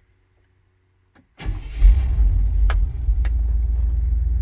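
1990 Chevy pickup engine started on the key of an aftermarket dash-mounted ignition switch: a small click, then the engine catches suddenly, rises briefly and settles into a steady idle.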